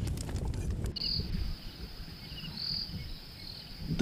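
Night insects trilling steadily in a high, thin, continuous band, with a couple of louder swells. It is preceded in the first second by a few light clicks over a low rumble.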